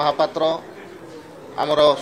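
A man speaking in Odia, with a pause of about a second in the middle.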